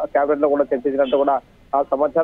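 A man's voice narrating a news report in Telugu, with a brief pause about one and a half seconds in.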